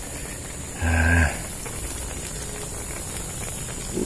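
A short, low, flat-pitched hum, like a man's closed-mouth "mm", about a second in. It sits over a steady outdoor background with a thin high-pitched drone.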